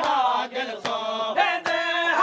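Men's voices chanting a noha, a Shia lament, together, with the slap of hands striking chests in matam keeping a steady beat: three strikes about 0.8 seconds apart.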